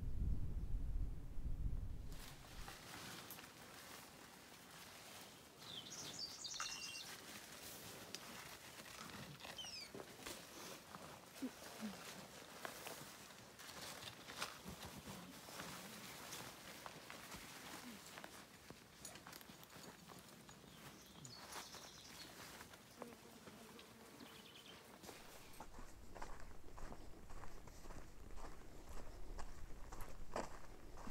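Outdoor ambience: a low wind-like rumble on the microphone for about the first two seconds, then scattered light clicks and rustling with a few short bird chirps. Near the end, footsteps on a dirt trail with a low rumble return.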